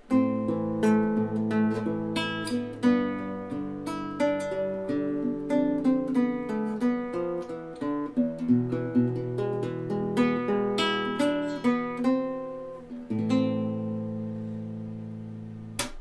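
Admira nylon-string classical guitar fingerpicked: a flowing run of single plucked notes over bass notes, ending on a chord left ringing for the last few seconds.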